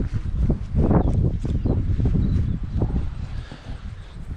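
Wind buffeting the camera microphone: a loud, irregular low rumble, with scattered short knocks from the handheld camera being moved.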